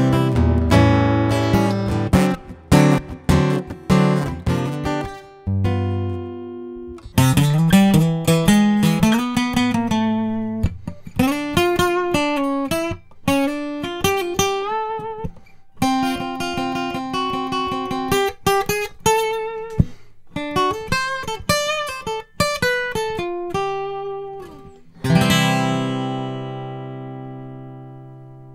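Gibson J-45 acoustic guitars, a 2018 J-45 Standard and a 2021 J-45 Studio, played in turn in short solo passages of picked single notes and chords. The passages are heard first through a pickup and DI with added reverb, then through a large-diaphragm condenser microphone. About three seconds before the end a chord is struck and left to ring, fading away.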